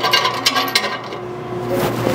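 Metal bolt hardware clicking and clinking as a bolt is worked by hand into the rear mount of a rock slider. A quick run of sharp clicks fills the first second, then fades to scattered clinks over a steady low hum.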